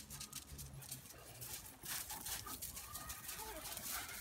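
Dogs playing rough on wood chips: scuffling and crunching under their paws, with a few short, high whining squeaks from about halfway.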